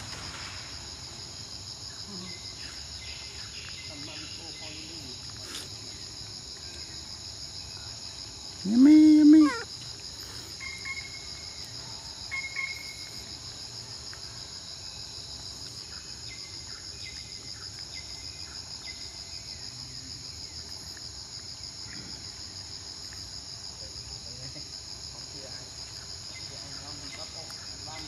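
Steady, high-pitched insect chorus. About nine seconds in, a short voice-like call of about a second rises over it and is the loudest sound. A couple of faint short chirps follow soon after.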